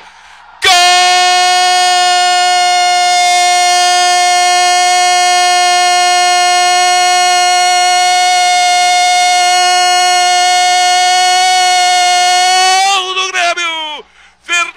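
A male football radio commentator's drawn-out goal shout, one loud vowel held on a single steady pitch for about twelve seconds, announcing a goal. Near the end it breaks into a few shouted syllables.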